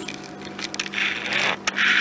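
A crisp fried potato pakora being pulled apart by hand: a few sharp crackles over a hiss, with a steady low hum behind.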